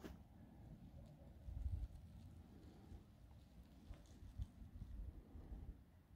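Faint, uneven low rumble of wind buffeting the microphone, gusting about one and a half seconds in and again from about four seconds, with a few faint ticks.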